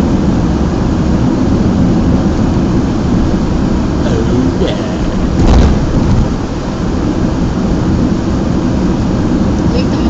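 Car road noise heard from inside the cabin while driving: a loud, steady low rumble of tyres and engine, with one heavier thump about five and a half seconds in.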